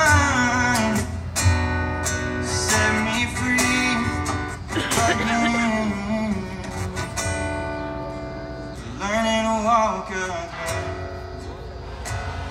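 Live acoustic song: an acoustic guitar strummed steadily with a cajon beat underneath, and a singer's voice holding long, wavering notes without clear words.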